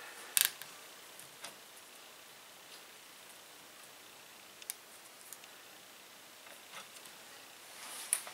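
Faint, scattered small clicks and ticks of plastic zip ties and a rubber timing belt being handled against a 3D printer's metal X-axis carriage, a few spaced seconds apart.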